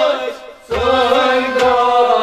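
Kashmiri Sufi music on harmonium and rababs, with held notes and a chant-like line. The sound dips briefly about half a second in and then comes back in full with a low drone underneath.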